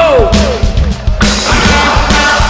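Live hard rock band playing loudly: a note glides downward at the start, the sound thins briefly to a few drum hits, then the full band comes back in a little after a second.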